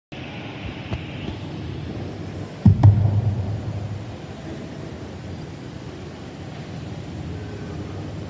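Steady room noise of a hall, with a sudden low thump about three seconds in that rings on as a low hum and fades over about a second.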